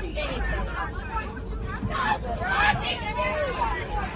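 Many passengers' voices talking over one another in an airliner cabin, over a steady low hum and a faint steady tone.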